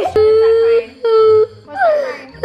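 A toddler crying in long, held wails: two steady-pitched wails, then a shorter cry that falls in pitch near the end.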